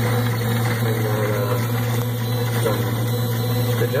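3D-printed bevel gearbox on a 3D printer running with a steady low hum, its gears lubricated with olive oil and still breaking in.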